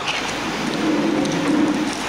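Steady hiss-like background noise in a gap between spoken phrases, with a faint low hum in the middle.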